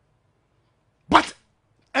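Silence, then about a second in one short, loud vocal sound with a falling pitch, lasting about a quarter of a second.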